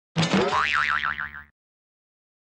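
Cartoon 'boing' spring sound effect: a twang that rises in pitch, then wobbles rapidly up and down for about a second before cutting off suddenly.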